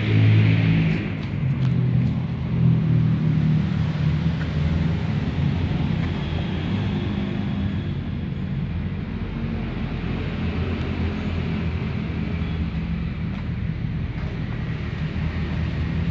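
Motorcycle engine idling steadily with a low rumble, a little louder in the first few seconds.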